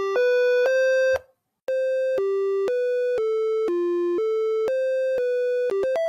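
A simple electronic tune of single synthesized beep-like notes, one at a time, each about half a second long, stepping up and down in pitch. It breaks off briefly about a second in, then resumes and ends with a few quicker notes.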